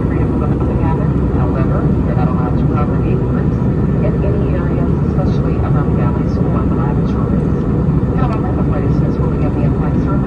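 Steady roar of jet airliner cabin noise, engines and airflow heard from a seat by the window, even and unchanging throughout. Faint, indistinct voices of people talking in the cabin run under it.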